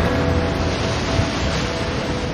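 Ocean surf breaking: a steady rush of waves, with music playing underneath in a few held notes.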